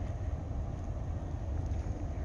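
Steady low background rumble with a faint hiss and no distinct event; the lighter flame on the fatwood makes no separate sound.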